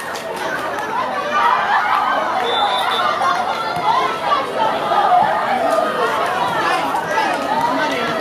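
A crowd of schoolchildren chattering, many young voices talking and calling out over one another.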